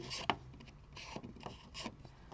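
Faint rustling and rubbing of folded paper as the pouch is handled, with a few light clicks.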